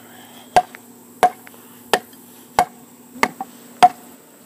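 Claw hammer striking a 2x8 board in six evenly spaced, sharp blows, about one every two-thirds of a second. The blows drive an anchor bolt down into wet concrete in a block core until the board sits level on the block.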